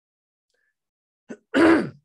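Near silence for about a second and a half, then a man clears his throat once, briefly.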